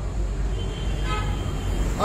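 Steady low rumble of road traffic, with a short vehicle horn toot about a second in.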